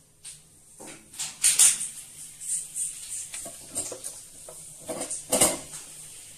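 Aluminium drink can being crushed in one hand: thin metal crinkling and popping in a run of irregular cracks, loudest about a second and a half in and again near the end.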